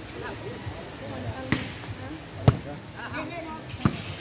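A volleyball struck by players' hands and arms three times during a rally, short hits about a second apart, the middle one the loudest, with voices chatting in the background.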